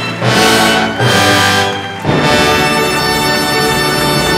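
A symphony orchestra playing, strings and brass together. Two short phrases give way to a fuller passage about two seconds in.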